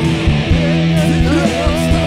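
Live worship band playing a rock-style song, led by electric guitars.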